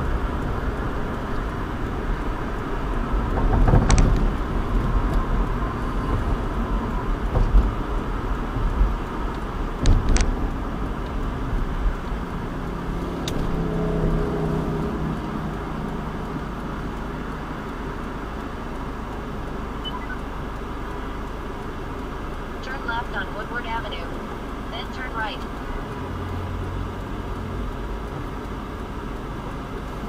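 Car heard from inside the cabin in city traffic: steady road and engine noise that eases as the car slows from about 30 mph almost to a crawl. Two sharp knocks stand out, about four and ten seconds in.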